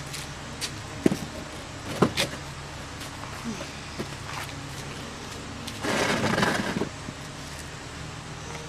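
A few sharp knocks and clicks, then about a second of scraping as a wooden chair is dragged across paving and set down. A steady low hum runs underneath.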